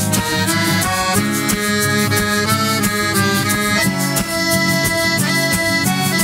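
Weltmeister piano accordion playing the instrumental melody, its held notes changing about every half second, over an acoustic guitar strumming a steady rhythm.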